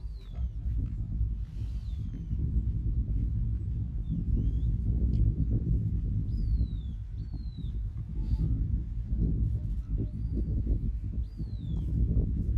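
Steady, gusty wind rumble on the microphone across an open field. About seven short, high whistles, each falling in pitch, are heard over it at irregular intervals.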